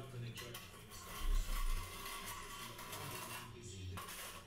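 Steel plastering trowel working wet sand and cement render onto a window reveal: faint scraping with light metallic clinks against the hawk, and a dull thump about a second in.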